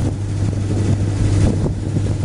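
A boat's motor running with a steady low hum, with wind rumbling on the microphone.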